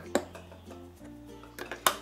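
Quiet background music, with two sharp clicks, one just after the start and a louder one near the end: the snap-lock clips of a plastic container lid being unfastened as the lid comes off.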